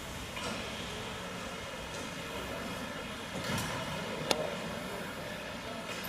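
Steady hum and hiss of an indoor ice rink hall, with a few faint knocks and one sharp click about four seconds in.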